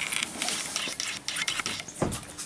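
Dog's claws clicking on a tiled floor as it moves around, an uneven run of many quick ticks.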